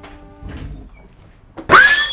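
Horror-film soundtrack: a held music chord stops about half a second in and a low thud follows. Near the end comes a sudden loud jump-scare sting, a tone that rises sharply and then holds high and ringing.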